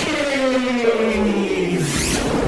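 FPV quadcopter's brushless motors whining as heard from the onboard camera. The whine jumps up with a click at the start, then falls steadily in pitch as the motors slow.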